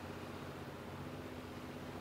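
Steady outdoor beach ambience: an even wash of noise with a low, steady hum underneath.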